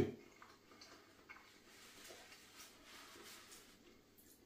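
Quiet room with a few faint, soft ticks and clicks from fingers picking at food on a plate.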